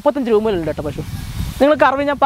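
A person speaking, with a hissing noise in the gap about a second in.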